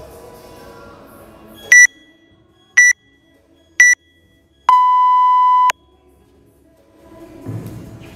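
Workout countdown timer beeping: three short high beeps about a second apart, then one longer, lower beep about a second long that signals the start. Background music drops away for the beeps and comes back near the end.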